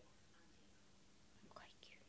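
Near silence: room tone with a faint low hum, and a faint brief gliding sound, rising then falling, about one and a half seconds in.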